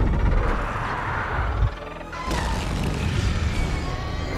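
Film score music over a heavy low rumble of sound effects. There is a sharp hit about one and a half seconds in, then a brief drop before the full sound swells back.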